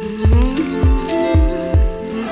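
Background music: a beat with a deep kick drum hitting about twice a second under held tones and a melodic line that slides up and down in pitch.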